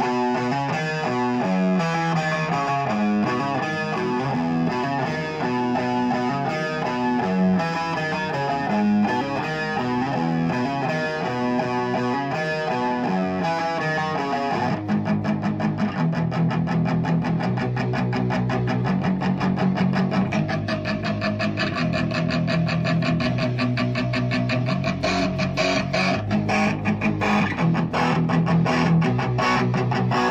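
Amplified electric guitar: a picked melodic riff for about the first half, then switching to fast, even strumming of chords.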